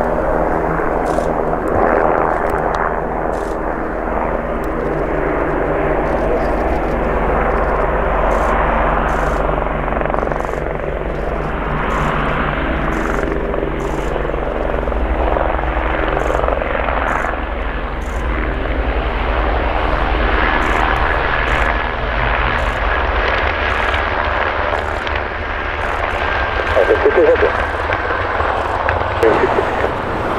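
Avro Lancaster's four Rolls-Royce Merlin V12 engines droning steadily as the bomber lands, with a helicopter flying nearby.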